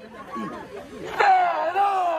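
Football supporters chattering, then a little over a second in a single voice strikes up a long, held call that slowly falls in pitch, the opening of a supporters' chant.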